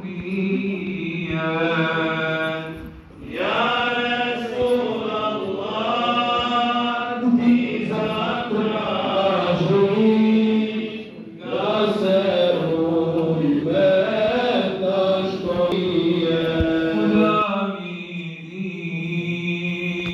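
Men chanting an Islamic religious melody in long, drawn-out phrases that break briefly about three, eleven and seventeen seconds in.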